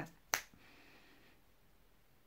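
A single sharp finger snap about a third of a second in, then quiet room tone.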